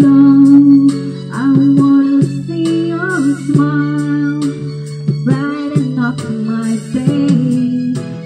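Karaoke backing music with a steady beat of about two strokes a second, and a woman singing along into a handheld microphone in gliding, drawn-out notes.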